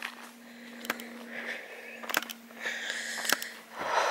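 A walker breathing with soft rustling steps on a grassy path, with three sharp clicks about a second apart, over a faint steady hum.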